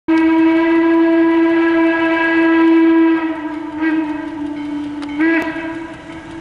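Western Maryland 1309, a 2-6-6-2 Mallet steam locomotive, blowing its steam whistle: one long, steady blast that drops a little in pitch and loudness about three seconds in, then swells again briefly just after five seconds.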